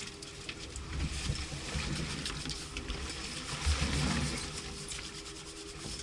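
Wind rubbing and buffeting on the microphone of a housed action camera mounted on an outboard motor, with a low rumble that swells about four seconds in.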